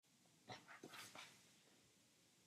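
Near silence, with a few faint brief sounds between half a second and a second and a quarter in.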